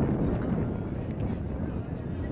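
Outdoor field ambience: wind rumbling on the microphone over faint, distant voices.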